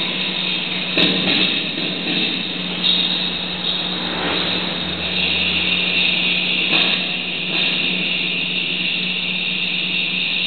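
Live electronic noise music played through a small amplifier: a steady low hum under a dense, harsh hiss. There is a sharp click about a second in, and the noise swells louder a few times.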